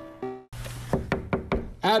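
Soft keyboard notes fade out on a last note. After a short gap, about five quick knocks on a door come close together, with a man's voice starting right after.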